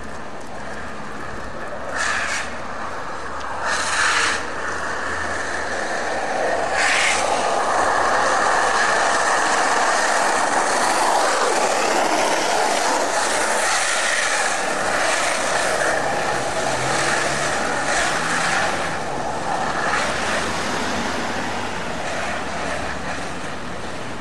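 Skateboard wheels rolling over street asphalt, a steady rolling noise that grows louder in the middle, with a few short knocks about 2, 4 and 7 seconds in.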